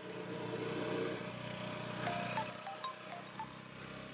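Background score: a low sustained drone with a few short, bell-like chime notes at different pitches in the second half.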